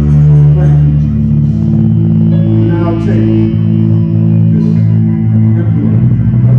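Electric bass guitar played through an effects pedal board, heard close to its bass cabinet: slow ambient worship music of long, held low notes that change pitch a couple of times.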